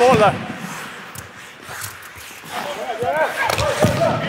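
Men shouting on an ice rink while hockey sticks knock a small ball about on the ice: a shout cuts off at the start, a few sharp stick hits follow in a quieter stretch, and the calls start again near the end with a louder hit.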